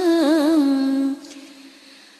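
A single voice chanting Vietnamese verse, drawing out the last syllable of a line in one long held note that steps down in pitch and wavers in small turns. It ends about a second in and is followed by a quiet pause.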